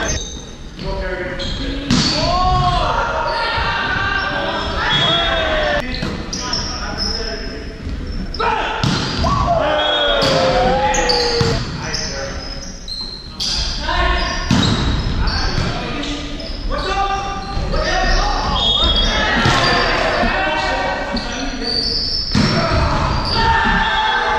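Indoor volleyball play in a reverberant gym: repeated sharp slaps of the ball being struck and hitting the hardwood floor, mixed with players shouting calls.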